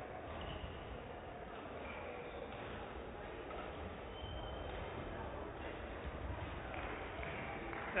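Sports-hall background between rallies: a steady low hum and murmur, with faint distant voices.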